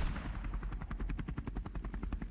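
Helicopter rotor chopping in rapid, even beats over a low rumble.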